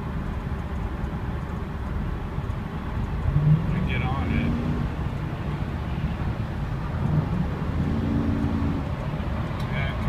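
Steady engine and road noise inside the cabin of a 2003 Chevrolet Suburban cruising on the freeway, with two brief pitched sounds about four and eight seconds in.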